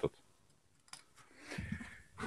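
Mostly near silence, with a faint click about a second in and a soft, low voice sound near the end.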